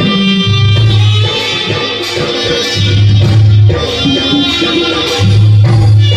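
Live Hindi devotional bhajan music played loud through a PA system. A hand-drum rhythm runs under a melodic instrumental line, with a deep bass note swelling about every two and a half seconds.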